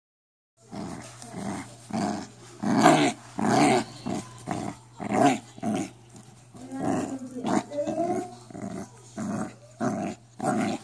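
A puppy growling in short bursts, about two a second, while tugging on a rope toy, starting about half a second in.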